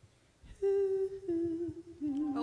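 A voice humming two long held notes, the second a little lower, starting about half a second in after a near-silent moment.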